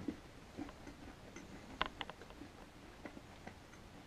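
Faint crunching and clicking of a hard chewable food tablet being chewed, with two sharper clicks about two seconds in.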